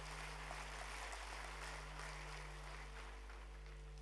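Large hall audience applauding, heard faintly as an even wash of clapping, over a steady low hum.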